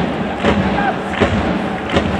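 Rhythmic thumps from the stadium stands, roughly one every three-quarters of a second, over a steady crowd hum: supporters' drumming and clapping during a football match.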